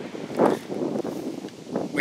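Wind noise on the microphone, with a short louder rush about half a second in.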